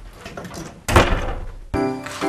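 A single loud thud of a door being shut about a second in, dying away quickly. Background music comes in near the end.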